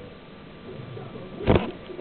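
Faint handling rustle, then a single soft thump about one and a half seconds in as the flip cover of an iPod touch case is shut.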